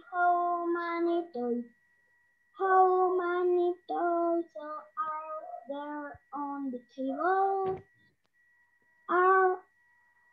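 A young girl singing a simple English counting song unaccompanied, phrase by phrase with short pauses between lines, heard over an online video call. A faint steady high whistle runs underneath.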